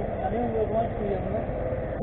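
Low, steady rumble of a small engine idling, with a man's voice faint in the background.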